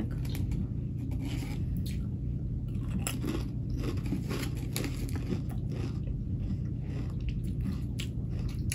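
Pringles potato crisps being chewed close to the microphone: a run of irregular crunches, several a second.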